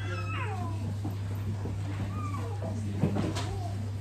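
A young child's high-pitched cry sliding down in pitch, amid the low murmur of a seated congregation, with a sharp knock about three seconds in. A steady low electrical hum runs underneath.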